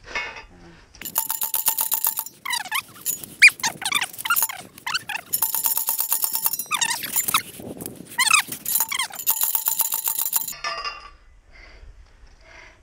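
A manual post driver is pounding a steel T-post into frozen ground, with repeated clanging metal-on-metal strikes and a ringing tone. The strikes come in three bouts with short pauses between them and stop about ten and a half seconds in.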